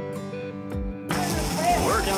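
Trolling reel's clicker ratcheting as a striking billfish pulls line off. It starts about a second in over the hiss of the boat's wake, after the last held notes of a country song.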